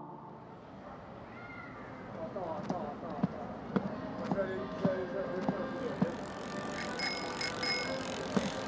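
Street ambience fading in: background crowd chatter with scattered clicks and knocks, and a bicycle bell ringing a few times near the end.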